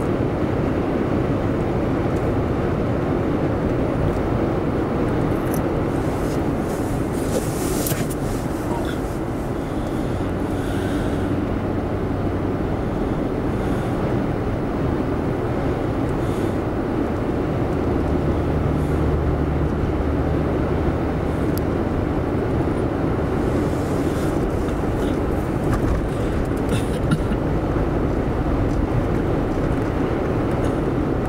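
Steady road and engine noise inside a moving car's cabin, with the engine's low hum coming through more clearly about two-thirds of the way in and a brief click about 8 seconds in.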